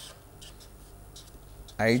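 Felt-tip permanent marker drawing on paper: a few faint, short scratching strokes.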